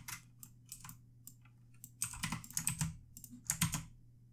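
Typing on a computer keyboard: quick runs of keystrokes in the first second, again between about two and three seconds in, and a few more near the end, with short pauses between.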